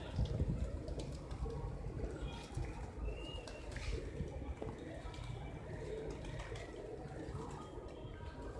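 A large flock of rock pigeons cooing continuously, many soft overlapping coos. A low rumble is loudest in the first second.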